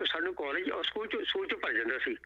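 Speech only: a person talking without a break, the voice thin and narrow as heard over a telephone line.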